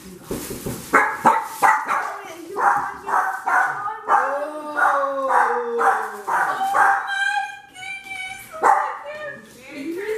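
A dog barking repeatedly, with excited high-pitched shrieks and voices joining in partway through.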